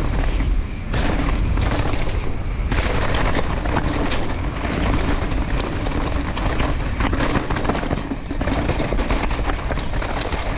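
Mountain bike ridden down a rocky, loose dirt downhill trail: a continuous rumble of the tyres over dirt and loose rocks, with the bike rattling and clattering over the bumps.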